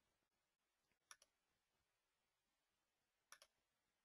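Near silence, broken by two faint double clicks, one about a second in and one near the end.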